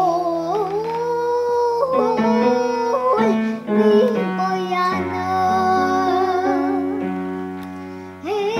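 A young girl singing a song over instrumental accompaniment with long held chords and bass notes; the sound tails off in the last second.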